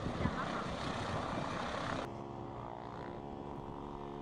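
Helicopter rotor and wind noise, cutting suddenly about halfway through to a steady engine hum with an even pitch.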